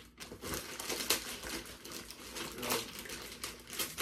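Clear plastic packaging bag crinkling in irregular crackles as it is handled around a tablet case.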